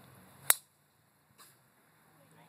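A golf club striking a ball off the tee: one sharp, loud click about half a second in.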